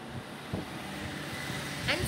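Steady background hum and hiss during a pause in speech, with a soft low thud about half a second in; a woman's voice starts a word at the very end.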